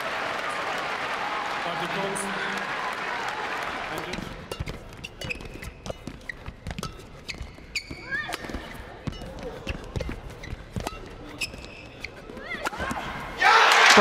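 Crowd noise in an arena settling down, then a badminton rally: a string of sharp racket hits on the shuttlecock mixed with short shoe squeaks on the court. Loud applause breaks out near the end as the rally is won.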